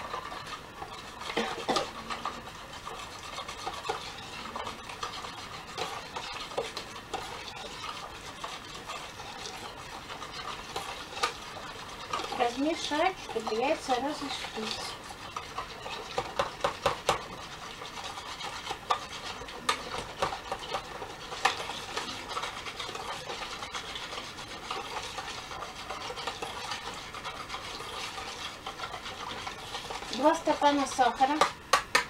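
Ingredients being stirred by hand in a plastic mixing bowl: steady scraping with irregular clicks and knocks of the utensil against the bowl.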